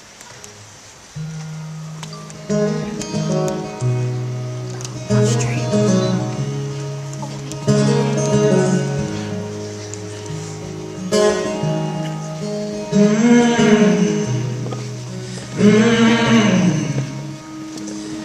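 Steel-string acoustic guitar played live, starting about a second in with sustained chords over low bass notes as the intro of a song. In the last few seconds a man's wordless sung notes swell and fall three times over the guitar.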